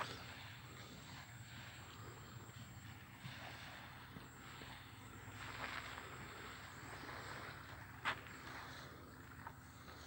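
Faint outdoor ambience, a soft steady hiss, with two sharp clicks: one right at the start and one about eight seconds in.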